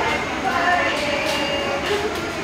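Busy restaurant dining-room din: indistinct chatter of other diners over a steady background rumble, with one short metal-on-crockery clink of a spoon against a bowl a little after halfway.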